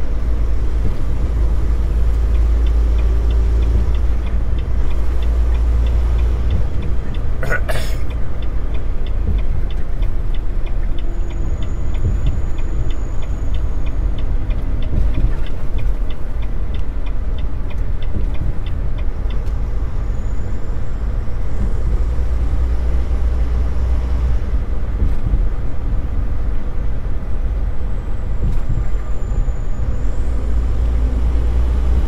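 Volvo VNL860 semi-truck cruising at highway speed, heard from inside the cab: a steady low rumble of engine and road. One sharp click comes about eight seconds in, and a light, rapid ticking runs through the first twenty seconds or so.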